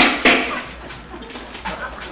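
Student-built competition robot shooting a ball: two sharp thumps about a quarter second apart, then a fading echo in the room.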